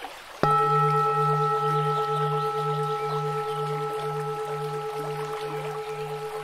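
A single struck Buddhist bell rings out about half a second in and slowly fades. Its deep tone pulses about twice a second, with several higher ringing tones above it.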